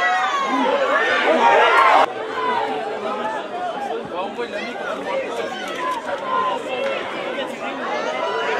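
Many overlapping voices of players and spectators calling and chattering across a football pitch. The calls are louder for the first two seconds, then cut off abruptly at an edit. After that, quieter scattered calls carry on.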